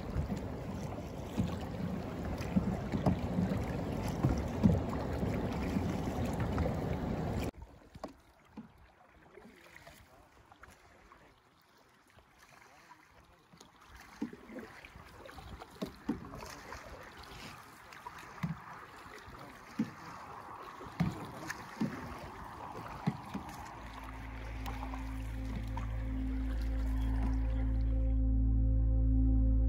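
Canoes being paddled on calm water: water noise and paddle strokes, loud for the first seven seconds or so, then quieter after a cut, with single stroke knocks and splashes about once a second. Music fades in near the end.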